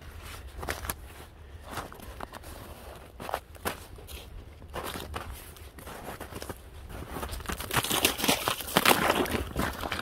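Boots crunching through snow in footsteps. Near the end the crackling gets denser and louder as a boot presses onto the thin skin of ice over a puddle.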